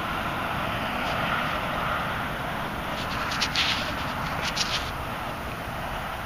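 Steady wind noise on the microphone, with a few brief rustles of a gloved hand handling a small coin about halfway through.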